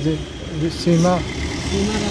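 A man speaking in short, broken phrases over a steady low background rumble.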